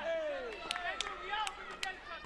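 Four sharp smacks, spread over about a second, during a kickboxing bout, with voices calling out around them.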